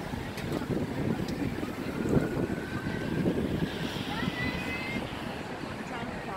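Wind rumbling and buffeting on the microphone in an open stadium, with faint crowd voices in the background.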